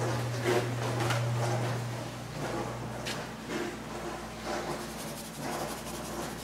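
Light handling noises, scattered clicks and rustles, over a low steady hum that stops about three seconds in.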